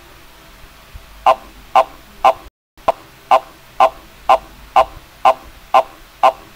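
A short pitched blip repeating steadily about twice a second, starting about a second in, with a brief cut to silence about two and a half seconds in.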